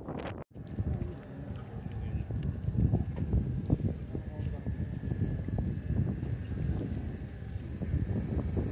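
Wind buffeting the microphone in an uneven low rumble, with indistinct voices of people close by; the sound breaks off for an instant about half a second in.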